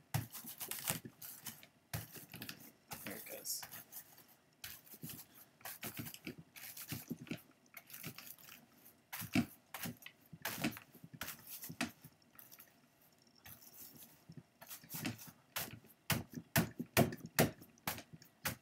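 A bristle brush pressing and dragging wool and other fibers down into a blending board's wire carding cloth, making irregular scratchy strokes several times a second. There is a quieter pause about two-thirds of the way through.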